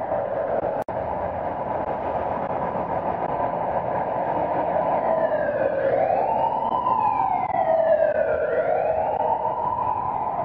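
A siren wailing over a steady rushing noise. It holds one pitch at first, then from about halfway through rises and falls slowly, roughly once every three seconds. The sound cuts out for an instant about a second in.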